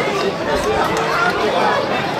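Indistinct chatter of several voices talking and calling over one another, with no single clear speaker.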